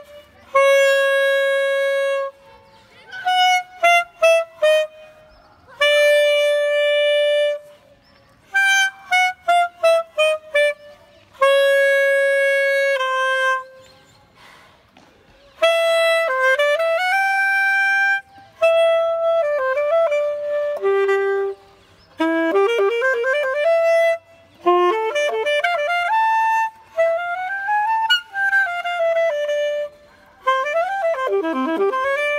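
Unaccompanied alto saxophone playing a Colombian pasillo: phrases of quick descending runs that settle on long held notes, separated by short pauses. From about halfway the playing turns more flowing, with rising and falling lines.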